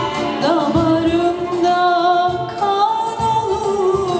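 A Turkish art music (sanat müziği) song performed live: a solo voice sings a wavering, ornamented melody over an accompanying ensemble that keeps a regular beat.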